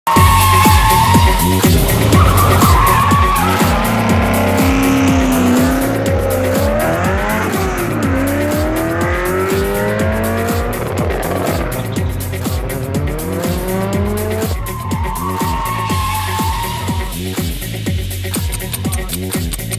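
Race-car engines revving up and down and tyres squealing, mixed over music with a steady beat.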